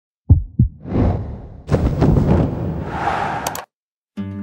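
Intro logo sound effect: two deep thumps like a heartbeat, then a swelling rushing whoosh that builds and cuts off suddenly just before the end.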